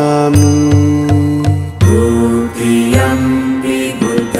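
A mantra chanted in long held notes over instrumental music, with a few low, evenly spaced beats in the first half.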